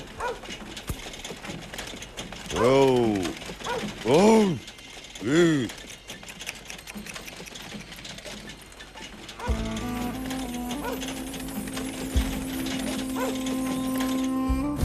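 A man's three loud wordless shouts, about a second apart, urging a horse on, over the rattling and clicking of a horse-drawn wooden cart moving off. Soft music comes in about two-thirds of the way through.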